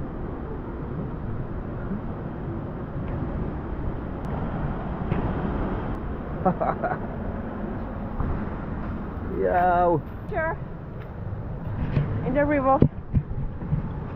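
A steady rushing outdoor background noise, with short bursts of people's voices: once about six and a half seconds in, again around ten seconds, and again about twelve seconds in.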